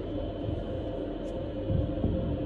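Steady background hum of a public restroom, with faint music mixed in.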